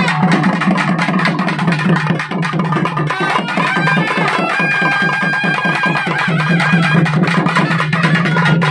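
Loud, fast, dense drumming in traditional temple-festival music, with a steady low drone under it and a held melody line that comes through in the middle.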